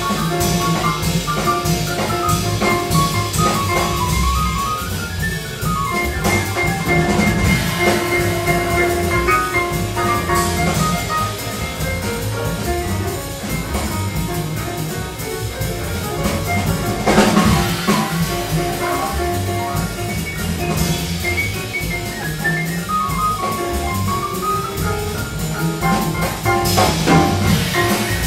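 Jazz piano played on a Steinway grand, running lines of notes, backed by a drum kit, with cymbal crashes near the middle and again near the end.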